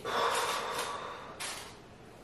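A woman's long, forceful breath out through the lips, followed about a second and a half in by a short sharp breath, as she braces to pull hard wax off her underarm.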